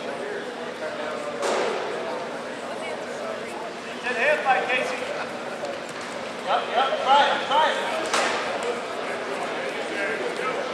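Raised voices shouting in bursts in a large, echoing gymnasium, loudest around the middle and again a couple of seconds later, with two sharp slaps or knocks, one early and one near the end.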